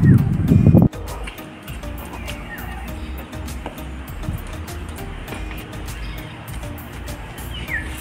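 Background music with a steady beat. A man's voice is heard for about the first second, then only the music, at a lower level.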